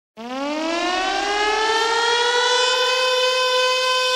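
A siren sound effect opening a reggaeton track: one long tone that winds up in pitch over about the first two seconds, then holds steady.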